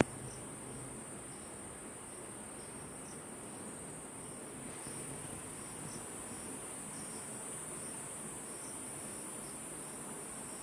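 Steady high-pitched chorus of insects such as crickets, with faint short chirps now and then over it.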